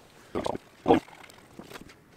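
Two short grunting sounds from a man's voice, about a third of a second and about a second in.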